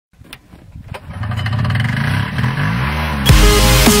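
Polaris Startrak 250 snowmobile engine running and revving, its pitch rising and falling. About three seconds in, loud electronic dance music with a heavy bass cuts in over it.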